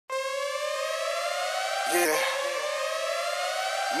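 A siren sound opening a pop/R&B song. It comes on suddenly as one held wail that climbs slowly in pitch for about four seconds, then drops back and starts climbing again. A voice says "yeah" about two seconds in.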